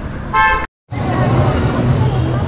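A brief car horn toot about a third of a second long, cut off abruptly by a moment of silence, after which a steady low hum and busy street noise carry on.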